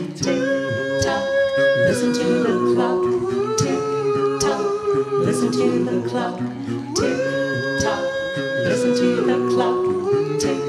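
Doo-wop a cappella group of four men and a woman singing close harmony into handheld microphones, with no instruments. A high voice holds long notes over the backing voices, stepping down in pitch about two seconds in and again near the end.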